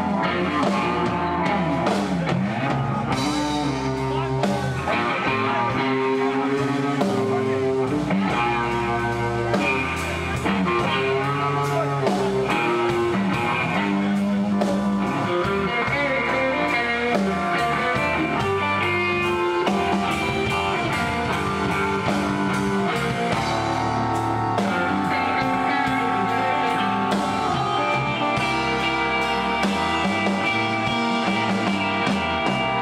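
Live electric blues band playing an instrumental break: electric guitar lead with bent notes over a second electric guitar, bass and drums.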